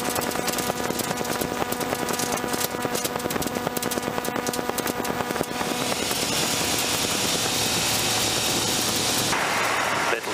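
Light aircraft's piston engine and propeller heard from inside the cockpit as it rolls along the ground, with a run of rapid rattles and clicks over the first five seconds or so. After that the sound turns steadier and a little louder.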